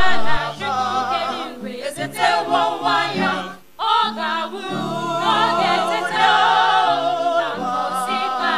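Choir of mixed voices singing a Christmas carol in parts, with a brief break for breath about three and a half seconds in.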